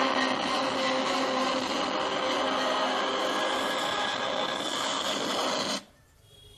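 Loud, steady buzz and hiss from a loudspeaker driven by a homemade amplifier, starting suddenly and cutting off suddenly near the end.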